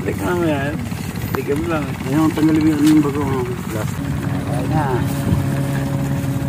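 Soft voices talking, with a steady engine hum underneath that holds one pitch and is clearest in the second half.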